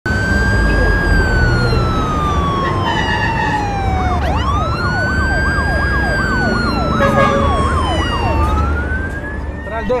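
Several police sirens sounding at once, over a steady low rumble. Slow wails fall and rise, and from about four seconds in a faster yelp sweeps up and down about twice a second alongside them.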